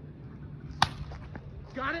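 A single sharp crack about a second in: a wiffleball bat hitting a plastic wiffle ball.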